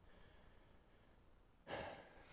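Near silence of room tone, then near the end a man draws one short, audible breath into the pulpit microphone.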